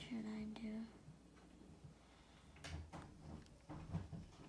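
A girl's voice holds a short drawn-out sound for about the first second. Then come a few faint taps and rubs of a hand working glitter onto a paper drawing, the clearest near the end.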